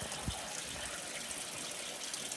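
Water running steadily from the float-valve inlet into a plastic stock-watering trough as it fills, fed by the 12 V pump's hose line.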